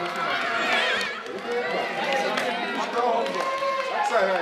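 Several voices shouting and calling over one another at a youth football match, as spectators and players react to a goalmouth scramble.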